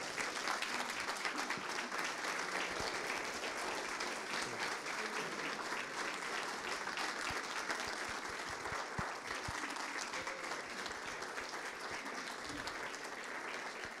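Audience applauding: a steady round of clapping that eases slightly toward the end.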